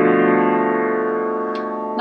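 Piano chord, a minor seventh flat five (half-diminished) chord, held and slowly fading away.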